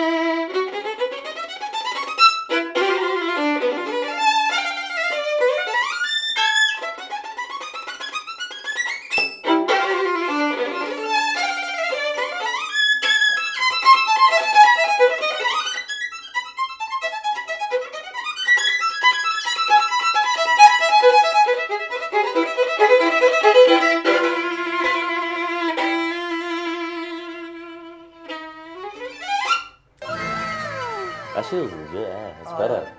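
Solo violin playing a virtuosic passage in up-bow staccato, with fast rising runs of short separated notes several times and a final rising run near the end.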